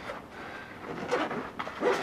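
Nylon backpack being handled: fabric rustling with a few soft scrapes and clicks as its pouches are moved.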